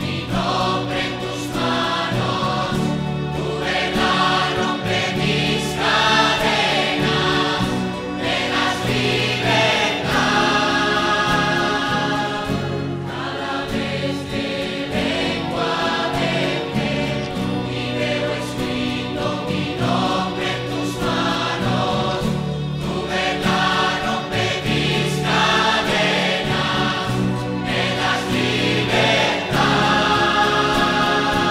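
Worship music with a choir singing over instrumental accompaniment, steady throughout.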